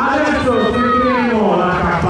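Speech only: the race commentator talking continuously.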